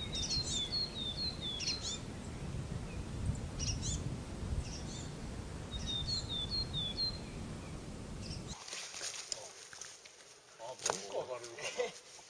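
A small bird calling in two short runs of quick, repeated high notes, over a low wind rumble on the microphone. The rumble cuts off suddenly about eight and a half seconds in, leaving a few knocks and brief voices.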